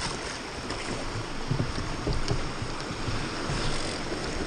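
Fast river current rushing and splashing against an inflatable rowing raft, with irregular low thumps mixed into the steady water noise.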